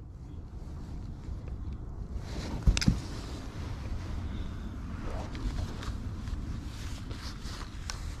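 Handling noise: a low steady rumble with faint clicks, and one sharp knock about three seconds in.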